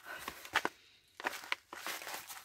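Kraft-paper stand-up tea pouch being handled, giving soft irregular rustles and crinkles with a short pause about a second in.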